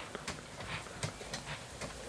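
Tomato vines being handled during picking: leaves rustling with half a dozen irregular sharp clicks and snaps as the fruit is pulled off the plants.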